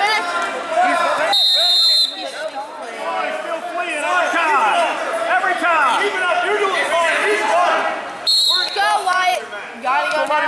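Referee's whistle blown twice, a steady shrill blast of under a second about a second and a half in and a shorter one near the end, over several people shouting in an echoing gym.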